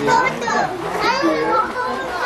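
Several children calling out and shouting over one another as they play.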